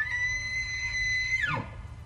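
A bull elk bugling: a whistling call that has already climbed high is held steady on one high note for about a second and a half, then drops away sharply.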